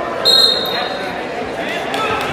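A short, shrill signal tone sounds about a quarter second in and lasts about half a second, stopping the wrestling. It rises over the chatter of a gym crowd.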